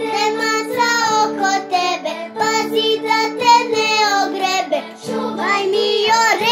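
A young girl singing a children's song, her voice held on long gliding notes over steady sustained musical notes, with a brief break about five seconds in.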